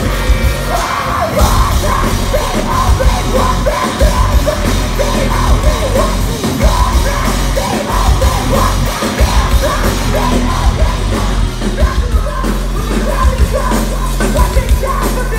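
A rock band playing live through a festival PA, heard from within the crowd: heavy bass and drums and distorted guitar, with a shouted lead vocal throughout.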